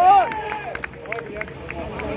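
A man's loud drawn-out shout at the very start. Then quieter spectator voices and open-air background, with a few short sharp clicks.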